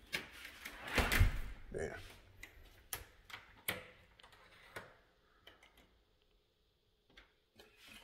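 A door being shut, with a thud about a second in, followed by a few light clicks and knocks that die away to near silence.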